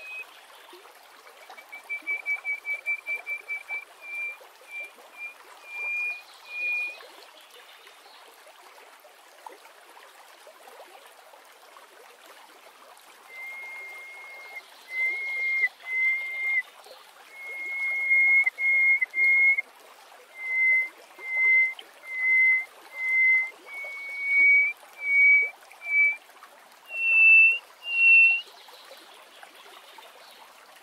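Hoopoe lark singing: first a quick run of short whistled notes slowing into a few spaced ones, then after a pause of several seconds a long series of clear piping whistles that climb in pitch near the end. A steady background hiss runs underneath.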